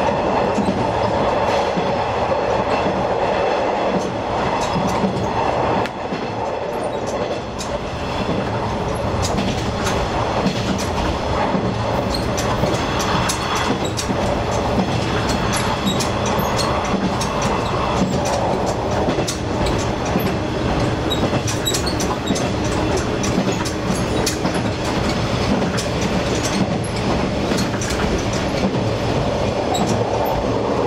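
Diesel railcar running along the track, heard from the cab: a steady engine and wheel rumble with scattered clicks from the rail joints.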